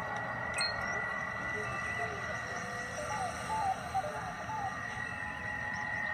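Soundtrack of a TV drama clip: a quiet, steady ambient bed with a held high tone over a low rumble, and faint voices in the middle.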